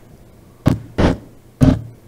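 Three short, loud bursts of off-road motorcycle clip audio, heard in snatches as the clip is scrubbed in a video editor's trimmer, over a steady low electrical hum.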